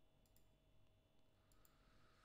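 Near silence: faint room tone with a few soft clicks, in two quick pairs.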